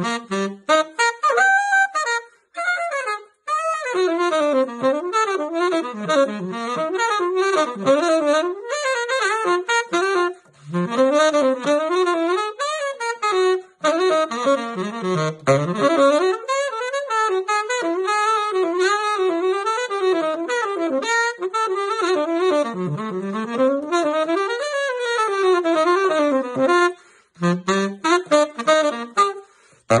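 King Super 20 Silversonic tenor saxophone played solo in fast jazz lines, quick runs sweeping up and down the horn. The phrases are broken by a few short breath pauses.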